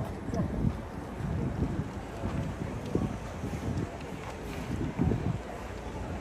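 Gusty wind buffeting the microphone, over the low engine rumble of a large coach driving past.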